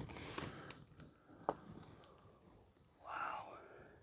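A woman's quiet, breathy whispered 'wow', with faint handling noise and one sharp click about a second and a half in.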